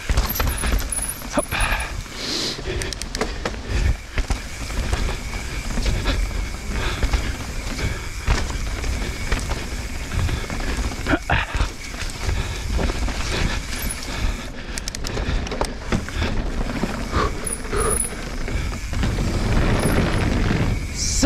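Mountain bike descending a dirt singletrack at speed: wind rushing over the microphone, tyres rolling over dirt, and frequent rattling knocks from the bike over bumps.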